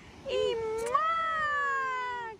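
A high-pitched voice holding one long drawn-out vowel call, rising briefly and then gliding slowly down in pitch.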